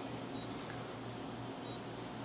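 Two short, high beeps about a second apart from the Delem DA-58T touchscreen control as its keypad is pressed, over a steady low hum.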